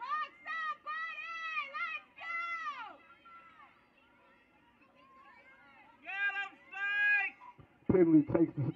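High-pitched voices shouting drawn-out calls across the field. There is a burst of several calls in the first three seconds, a quieter stretch, then two long calls around six to seven seconds in.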